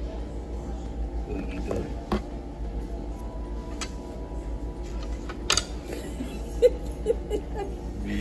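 Restaurant background music and faint chatter over a steady low hum, with a few sharp clicks from plastic packaging being handled and peeled open.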